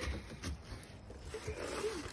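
Faint scraping and rubbing as a seated person is dragged a short way across wooden deck boards by a rope toy, with a few soft knocks.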